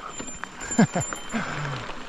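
A person's short laughs, a few brief sounds falling steeply in pitch, after a joke.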